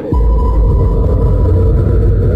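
Trailer sound design: a deep, loud rumble that comes in just after the start, with a thin, steady high tone held above it.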